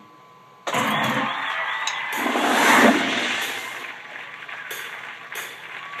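A recorded jet airplane rush, coming in suddenly about half a second in, swelling to a peak near the three-second mark and then fading: an airplane-passing sound effect at the head of the song's backing track.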